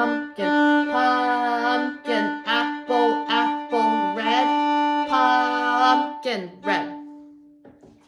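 Violin bowed on the D string in the dotted-quarter-plus-eighth rhythm, long note then short note repeated, with a woman chanting 'pumpkin' in time with the notes. The last note fades out about seven seconds in.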